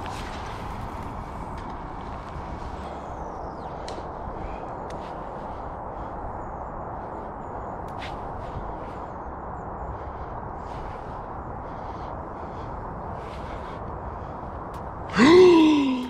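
Steady faint background noise, then about a second before the end a man's sudden loud cry that rises and falls in pitch. The cry is his reaction to a pike swirling at his lure close in at the bank.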